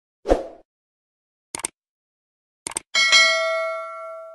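Sound effects for a subscribe-button animation: a short soft thump, then two quick clicks about a second apart, then a bright notification-style ding. The ding rings on with a few clear tones and fades slowly.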